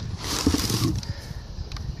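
Cardboard box flaps and packing paper rustling and scraping as the box is handled, loudest in the first second, then a few light knocks and crinkles.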